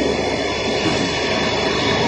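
A twin-spindle CNC router running, with the steady high whine of a spindle over a rough mechanical rumble. It grows louder right at the start.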